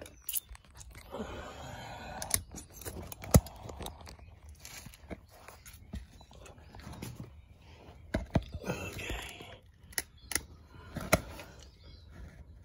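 Camera handling noise as the camera is moved about and set down: scattered sharp knocks and clicks with rustling between them, the loudest knock about three seconds in.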